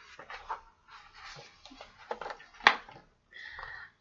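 A hardcover picture book being handled and opened: scattered rustles and soft knocks of the cover and pages, with one sharp tap a little under three seconds in.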